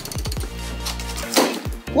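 Geode snapping apart with a sharp crack about one and a half seconds in, squeezed by a chain-type pipe cutter. Background music with low sustained bass notes and falling tones runs underneath.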